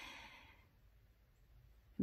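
A soft breath from the speaker that fades away within the first half second, then near silence.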